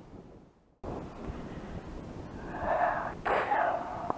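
The sound drops out briefly where the recording cuts, then a steady outdoor hiss. About two and a half seconds in comes a loud, breathy exhale from a person, lasting about a second.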